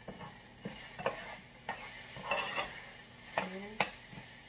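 A spoon stirring rice as it toasts in hot oil in a pan: a steady sizzle with scraping and a few sharp clicks of the spoon against the pan, the loudest near the end.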